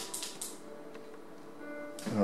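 A short rustle of a screen panel being handled in the first half-second, then faint background music with several steady tones.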